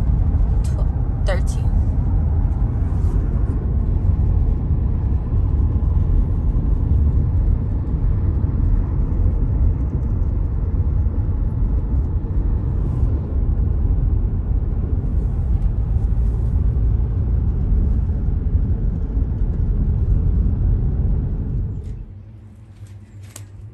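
Steady low rumble of road and engine noise inside a moving car's cabin. It drops away suddenly near the end.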